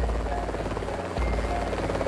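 Sound effect of a propeller aircraft's engine, a steady fast-fluttering drone, laid over children's background music.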